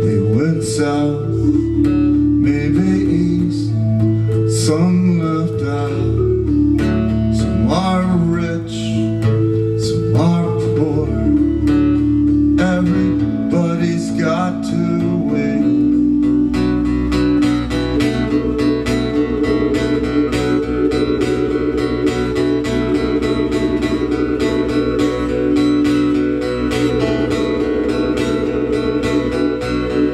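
Live instrumental break: an acoustic guitar strummed over sustained keyboard chords that change every few seconds. About halfway through, the guitar shifts to fast, dense strumming.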